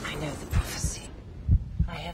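Trailer sound design: deep low booms in pairs, the second pair about a second after the first, over a black cut between scenes.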